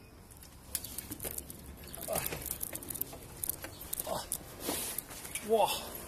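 Bicycle riding up a stepped concrete ramp, rattling and knocking repeatedly as it jolts over the small steps in the slope.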